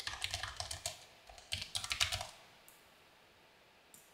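Typing on a computer keyboard: two quick runs of keystrokes, the second ending a little over two seconds in.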